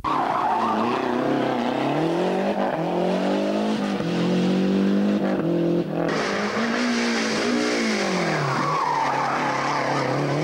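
Rally car engine driven hard on a special stage, its pitch repeatedly climbing and dropping as it revs through gear changes and lifts off the throttle.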